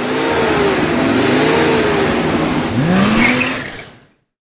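Logo-sting sound effect of a car engine revving over a rushing noise, the pitch wavering and then sweeping up in one rev near the end before it fades out.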